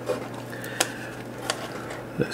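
Small plastic servo-lead connectors and wires being handled, with three light clicks, the sharpest a little under a second in, over a faint low hum.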